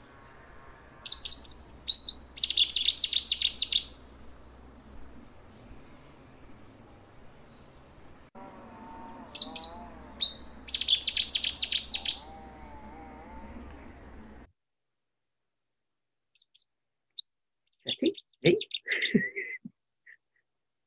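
Recorded song of a Cetti's warbler: two short, loud phrases of quick repeated notes, about eight seconds apart, over a faint background hiss. The recording cuts off about three-quarters of the way through.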